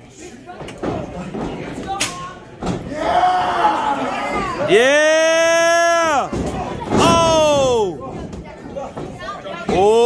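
A loud, drawn-out yell held for over a second about halfway through, followed by a shorter yell, with a few sharp thuds in the ring in the first few seconds.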